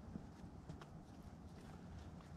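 Faint scattered knocks and scuffs of a climber's hands and shoes on the rock, four or five soft ticks over a low rumble.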